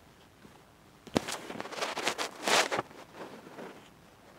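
Close handling noise: a sharp click about a second in, then about two seconds of rustling and scraping as a mask, headphones and clothing are pulled off near the microphone and the camera is moved.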